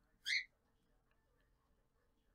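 Near silence: room tone, broken a quarter of a second in by one brief, faint high-pitched sound with a slight upward glide.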